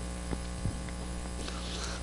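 Steady low electrical hum with faint background hiss, broken by two faint short clicks.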